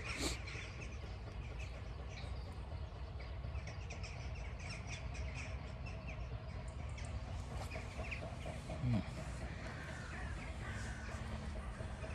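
Birds chirping and calling on and off over a steady low outdoor rumble, with one brief, louder low sound about nine seconds in.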